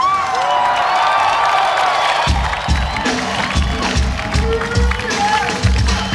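Live rock band in a stadium: the full band drops out, leaving held, bending notes over the crowd for about two seconds, then a kick drum starts a steady beat of about two to three hits a second.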